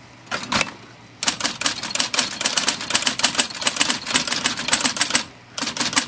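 IBM Model C electric typewriter being typed on, with its impression control set to low: a couple of keystrokes, then a fast run of typebar strikes at about eight to ten a second. The run breaks briefly about five seconds in and starts again near the end. A faint steady motor hum sits under the strikes.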